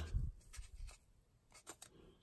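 Faint handling sounds of fingers rubbing on a foam block as a small lens chip is pulled out of it, with a few light clicks about one and a half seconds in.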